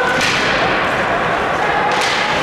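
Ice hockey play heard from the stands: skate blades scraping on the ice, with a sharp crack shortly after the start and another near the end.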